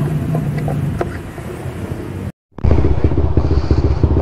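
Motorcycle engine running, a steady low hum with small clicks. It cuts out briefly just past halfway, then comes back louder and rougher, with a fast rattling pulse.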